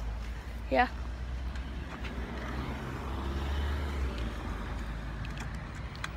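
A road vehicle driving past: a low rumble that swells in the middle and fades a second or two later.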